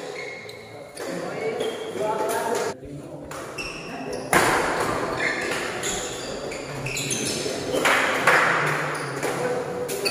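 Badminton doubles rally in a hall: short high squeaks of court shoes on the floor and sharp racket hits on the shuttlecock, over voices of players and onlookers.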